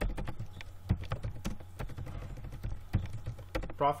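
Computer keyboard typing: a run of irregular key clicks over a steady low hum.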